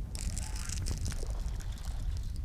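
Water splashing and sloshing at the surface as a hooked bass is fought near the boat, with a steady low rumble of wind on the microphone underneath.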